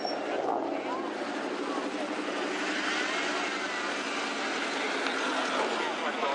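Steady engine drone with people talking in the background.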